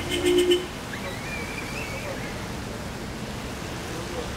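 Steady wash of rainy waterfront and city background noise. A brief loud pitched sound with two close low tones cuts in at the start, and a thin, wavering high whistle follows for about a second.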